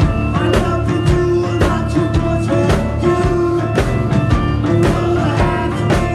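Live band music: a vibraphone struck with mallets, its notes ringing out over drums and percussion keeping a steady beat.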